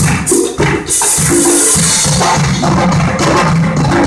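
A live percussion ensemble plays a Latin groove, with marimba, congas and drum kit and a repeating low bass line from the tuba. There is a brief break about half a second in before the full band comes back in.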